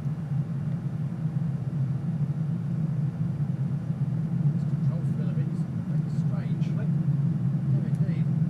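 Steady low rumble of a full-flight simulator's engine and runway sound during the takeoff roll, with faint voices in the background partway through.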